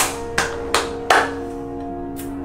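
Two people clapping their hands, a few sharp claps about three a second that stop just past a second in, the clapping that seals a spoken blessing. Soft background music plays under it.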